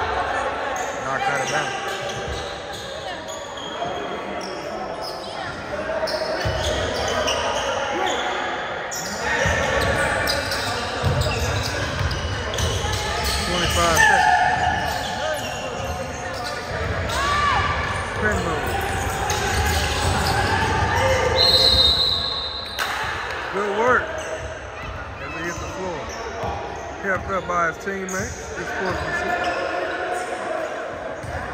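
A basketball game in a gym: a ball bouncing on the hardwood court among scattered players' and spectators' voices, all echoing in the large hall. A short, high, steady tone comes a little past two-thirds of the way through.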